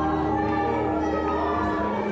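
Live musical-theatre singing with backing music and long held notes, recorded from the auditorium, with untrained audience voices singing along over the performer.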